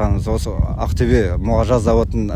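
A person's voice speaking throughout, in words that cannot be made out.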